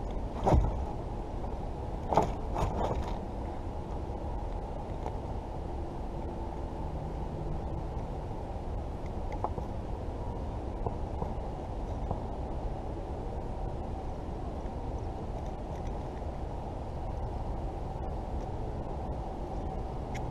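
A caught channel catfish thrashing and being handled in a plastic kayak: a few sharp knocks and rattles in the first three seconds, then a steady low rumble.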